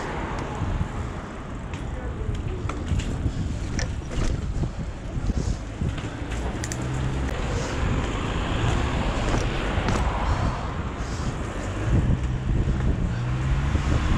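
Wind noise on an action camera's microphone while a mountain bike rolls over paved sidewalk and asphalt, with scattered small clicks and rattles from the bike.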